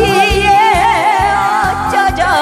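A woman singing into a microphone over amplified backing music with a steady beat, holding a long note with a wide vibrato.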